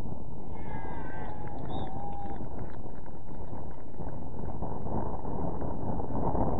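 Wind buffeting the microphone in a steady rush throughout, with a short high-pitched call about a second in that falls slightly in pitch and fades by about two seconds.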